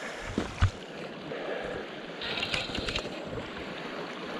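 Steady rush of flowing river water, with one sharp knock about half a second in and a short run of clicks and scraping near the middle.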